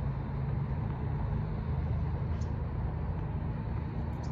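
Steady low rumble of background road traffic, with one brief faint high chirp about two and a half seconds in.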